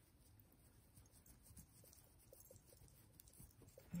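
Near silence: faint rubbing of a jewelry polishing cloth on a silver-tone necklace, working off a small tarnish spot, with a few faint soft ticks about halfway through.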